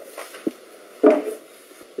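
A single short vocal murmur about a second in, over steady low background hiss, with a small click about half a second before it.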